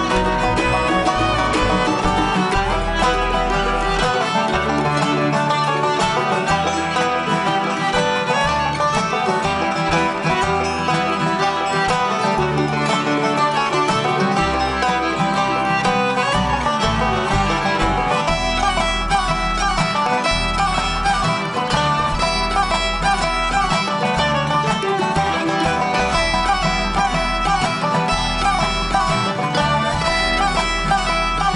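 Live bluegrass band playing an instrumental passage with no singing: banjo and fiddle to the fore over acoustic guitar, mandolin, resonator guitar (dobro) and upright bass.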